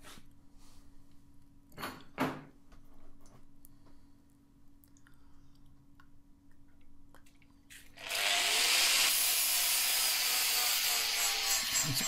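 A few light knocks and handling sounds, then about eight seconds in a DeWalt angle grinder starts and grinds steadily on the cut steel end of a hydraulic ram, cleaning up the cut face and putting a bevel on it.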